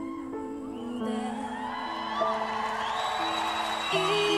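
A slow pop ballad's backing plays sustained chords, and an audience's cheering and whooping build over it from about a second in.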